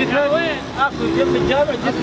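Men's voices in conversation, talking over one another in Arabic.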